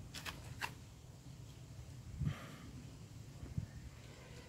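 Faint handling noises as a plastic bottle is tilted over a motorcycle's fuel tank filler: a few light clicks in the first second and two soft knocks, about two and three and a half seconds in, over a low steady background.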